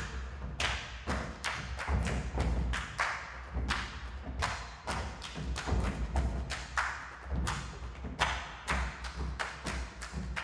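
Percussion ensemble playing a steady run of drum strikes, about two to three a second, with deep thuds under sharp attacks that ring briefly.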